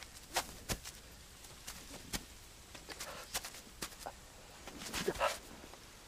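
A man's strained grunts and pained breathing among scattered short knocks and clicks, with a louder pained cry about five seconds in.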